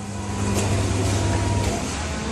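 Vacuum skin packing machine running with a steady motor hum as its pressing frame is raised; the hum shifts slightly about a second and a half in.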